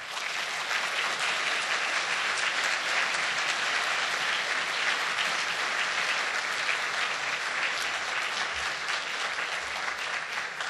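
Large seated audience applauding steadily.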